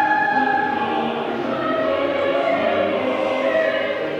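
A choir singing slow classical-style music in long, held notes.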